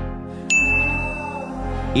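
A bright ding sound effect starts about half a second in and rings on one steady high tone for about a second over background music, marking the reveal of the poll result.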